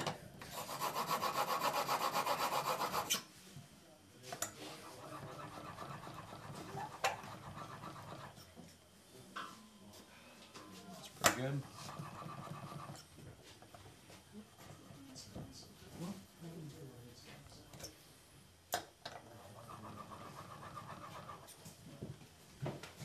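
Steel blade in a honing guide being rubbed back and forth on a sharpening stone in quick strokes. The scraping is loudest for the first three seconds, then comes in quieter runs broken by a few sharp clicks.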